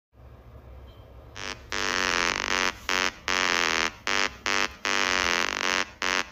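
Opening of an electronic music track: a low hum, then from about a second and a half in, a buzzy synthesised chord cut into short rhythmic stabs with brief silent gaps.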